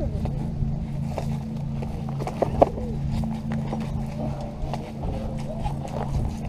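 Footsteps and handling knocks on rocky gravel ground, with a sharp knock about two and a half seconds in, over a steady low motor hum.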